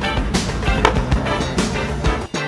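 Rock music with a guitar plays throughout. Over it come the sharp clacks of a skateboard landing a trick on concrete, one about a third of a second in and another near the end.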